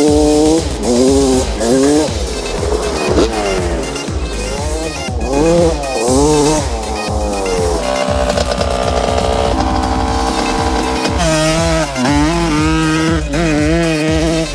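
Dirt bike engine revving in repeated rising and falling runs, holding a steady pitch for a few seconds past the middle, with background music.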